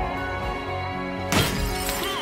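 Film-score music, cut into about 1.3 s in by a sudden loud crash and rattle of a metal dustbin being knocked over.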